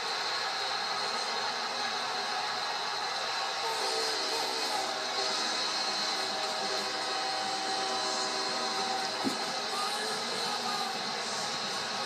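Stadium crowd cheering, heard through a television's speaker, with sustained musical notes from about four seconds in to about nine. A single sharp knock comes near the end.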